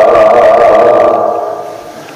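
A man's voice chanting Gurbani, holding one long drawn-out note that fades away over the second half, leaving a short lull.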